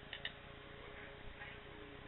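Quiet room tone with a couple of faint light ticks as small scissors and a scrap of fabric are handled, just before a cut.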